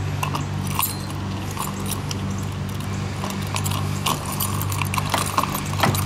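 Scattered light clicks and small rattles of hands working at the fuel-pump access panel in a car's rear floor, over a steady low hum.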